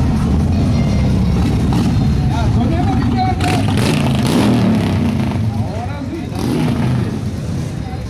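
A group of cruiser-style motorcycles running and riding past, a deep engine rumble with rising and falling revs about halfway through, over people talking.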